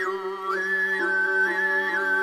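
Tuvan throat singing in the sygyt style: a steady vocal drone with a whistle-like overtone melody above it. The melody dips low at the start, rises about half a second in, then steps between a few high pitches.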